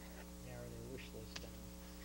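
Steady electrical mains hum with faint, indistinct voices in the middle and a couple of light ticks about a second in.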